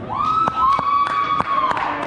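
High-pitched cheering screams from children in the crowd: two held voices overlap for about a second and a half, then stop. A few sharp knocks sound through them.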